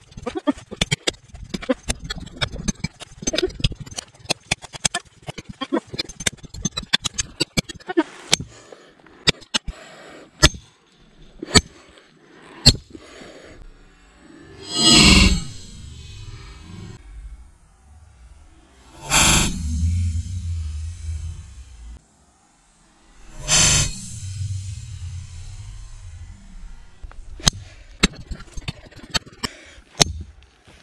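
The hand guard of a Work Tuff Gear V44X bowie knife hammered against a stone block: a fast run of sharp strikes, two to four a second, for the first dozen seconds, then only a few scattered knocks. Three loud rushing bursts follow a few seconds apart, with a low rumble after each.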